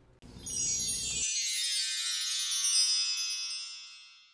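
Short chime sting of bright, bell-like high tones struck together, the kind that closes a video. A lower layer drops out after about a second, and the high tones ring on and fade away near the end.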